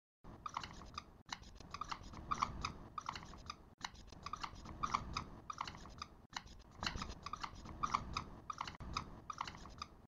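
Marker pen scratching across a whiteboard in quick, short strokes as lettering is written, faint, with brief breaks every couple of seconds.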